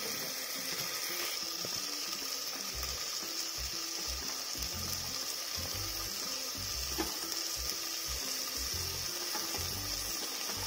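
Steady sizzle of onion-and-tomato masala frying in the base of an aluminium pressure cooker as raw potatoes and carrots go in on top, with one light click about seven seconds in.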